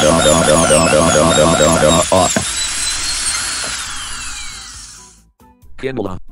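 High-pitched whine of a dentist's drill, wavering in pitch, that slides down and fades out about five seconds in. For the first two seconds a voice cries out in pain over it, repeating very fast, about five cries a second.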